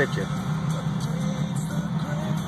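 Steady low hum inside a car cabin, with music playing quietly over it.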